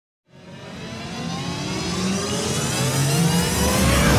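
Cinematic riser sound effect for a logo intro: layered tones sweeping upward in pitch over a low drone, swelling steadily in loudness.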